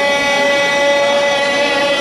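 A young man singing into a microphone, holding one long, steady note.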